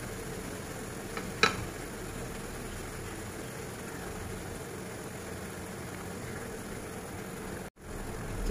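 Apple slices cooking in butter and sugar in a frying pan on the stove: a steady low sizzle under a faint hum. One sharp tap about a second and a half in, and a momentary cut-out near the end.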